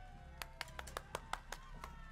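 Soft stage music with slowly falling held notes. About half a second in, a few people start clapping, irregular claps about five a second.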